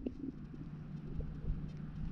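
Low, uneven rumble of wind buffeting the microphone outdoors, with a faint steady hum underneath.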